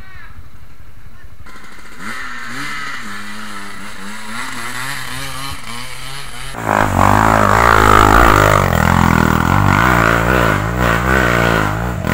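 Dirt bike engines. At first one runs at low, wavering revs. About six and a half seconds in, it abruptly gives way to a much louder engine being revved hard.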